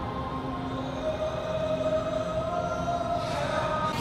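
Edited-in music made of a few long held notes, with no beat.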